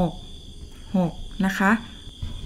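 A woman's voice finishes a count and, about a second in, says the short Thai phrase 'hok, na kha' ('six'). Under it runs a faint, steady high-pitched whine.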